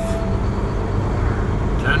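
Semi-truck diesel engine running, a steady low rumble heard inside the cab.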